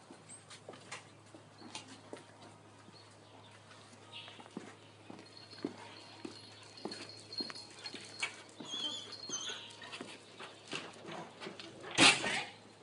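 Dogs whimpering faintly: a thin high whine drawn out over several seconds in the middle and a few short high yelps, over scattered footsteps and light taps on concrete steps.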